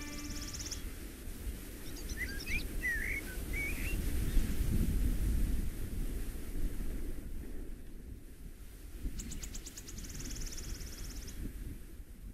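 Outdoor ambience: a low wind rumble on the microphone with birds chirping. A rapid high trill comes at the start and again about nine seconds in, and short sweeping chirps come around two to three seconds in.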